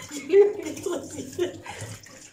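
A woman's voice talking, with the words too unclear to make out. The loudest syllable comes about half a second in.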